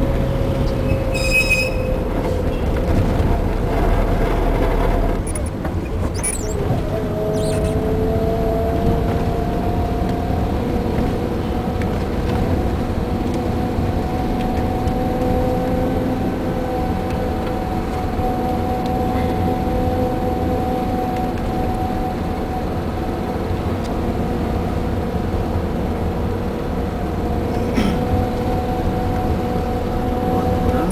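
Taxi engine and road noise heard from inside the cabin while driving slowly in town traffic: a steady drone whose engine note drops away about five seconds in and settles at a new pitch about seven seconds in. A brief high tone sounds about a second and a half in.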